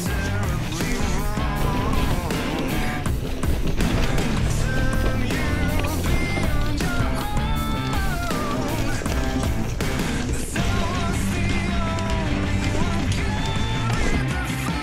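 Background rock music with a steady beat.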